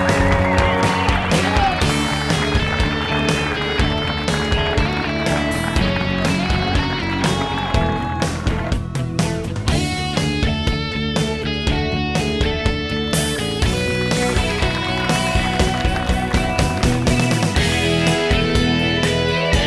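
Background music with guitar and a steady beat.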